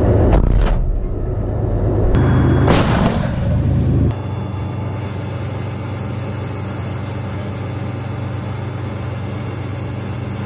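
T-90A tank's diesel engine heard from inside the hull: a loud, low rumble with a short sharp burst of noise about two and a half seconds in. About four seconds in it cuts abruptly to a steadier, quieter drone.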